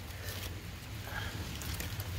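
Hands patting and pressing loose soil and mulch around a freshly planted pineapple slip: faint rustles and soft pats over a steady low rumble.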